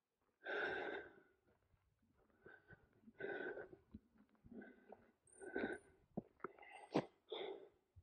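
A hiker breathing hard while walking: about six short, breathy exhales close to the microphone, the first the loudest, with a single sharp click near the end.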